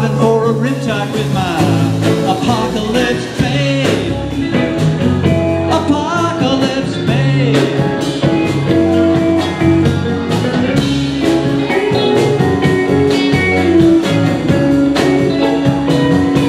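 Live rock band playing an instrumental break: a semi-hollow electric guitar plays a lead with bent, gliding notes over bass, drums and keyboards.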